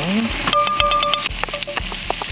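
Oil sizzling in a frying pan as chopped scallion, ginger and diced meat fry and are stirred. A brief steady pitched tone sounds for under a second, starting about half a second in.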